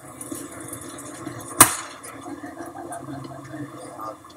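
Baseball bat striking a ball once about a second and a half in: a single sharp crack with a short ring, over faint outdoor ballfield background.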